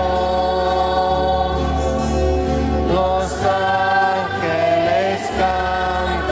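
Voices singing a slow hymn in held notes, changing pitch a few times, over a low sustained accompaniment.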